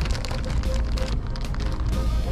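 Clear plastic bag crinkling as it is handled and turned over, with irregular rustles, over a steady low rumble.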